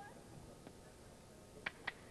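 Faint arena background during a boxing bout, with two sharp smacks close together near the end.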